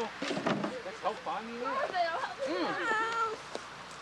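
High-pitched voices of young children calling out, with one drawn-out call about three seconds in and other voices mixed in.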